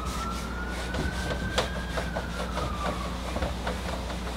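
A faint distant siren: one slow wail that rises in pitch and then falls away, under short clicks and strokes of a marker on a whiteboard.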